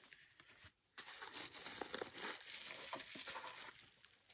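Plastic wrapping crinkling as a small wrapped figurine is unwrapped by hand, starting about a second in.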